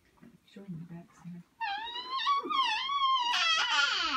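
A toddler's long, high-pitched squeal that wavers up and down in pitch. It starts about one and a half seconds in and grows louder and harsher near the end.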